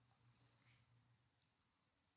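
Near silence: faint room tone, with one very faint click about one and a half seconds in.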